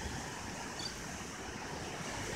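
Steady wash of ocean surf breaking on a beach.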